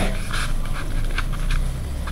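Soft, breathy rustling of a sheet of printer paper being folded corner to corner and smoothed down on a wooden table, over a steady low hum.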